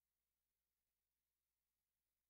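Digital silence: an empty soundtrack with no sound at all.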